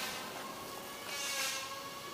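Steady hiss of water running from a garden hose, flushing debris down a roof gutter drain.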